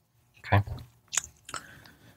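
A man's mouth noises in a pause between sentences: a short low voiced sound, then a couple of sharp lip and tongue clicks as he gets ready to speak again.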